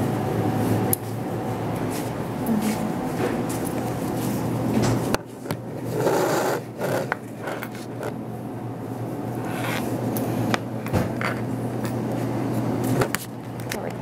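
Scraping, rubbing and clicking of a handheld camera being moved and handled, over a steady low hum of room tone.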